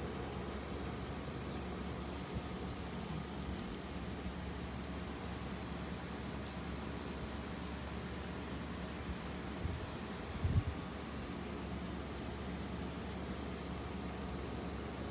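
Steady low outdoor rumble and hiss with a faint steady hum, and one brief low thump about ten and a half seconds in.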